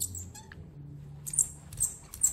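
Hand brayer rolled back and forth through wet metallic paint on a gel printing plate: faint tacky crackling, with a few short sticky ticks as the roller peels off the paint.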